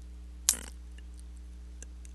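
A pause in a voiceover recording: steady low hum of the recording setup, with one short sharp click about half a second in and a faint tick near the end.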